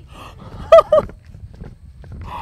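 A woman's two short, loud vocal exclamations of shock, muffled by the hand over her mouth, about three-quarters of a second in. Under them is a low rumble of wind on the microphone.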